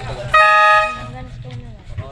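A horn sounds once, a loud, steady, buzzy blast lasting about half a second.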